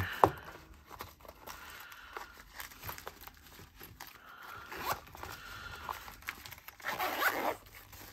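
Zipper on a nylon Alpaka HUB pouch's front pocket being worked, with fabric rustling and light handling clicks; a sharp click right at the start and a louder scratchy stretch near the end.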